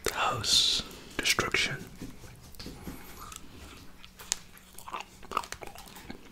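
Close-up eating of iced gingerbread: a few crisp crunching bites at about a second in, then scattered soft chewing clicks.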